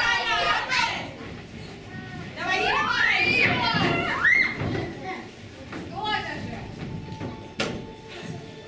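Children's voices shouting and calling out on a stage in a hall, with a few high rising cries in the middle, but no clear words. A single sharp knock comes near the end.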